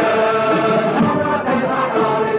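Music: a group of voices chanting or singing together in held, wavering lines.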